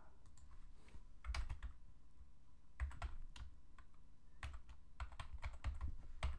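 Computer keyboard being typed on in short bursts of keystrokes, with pauses between the groups.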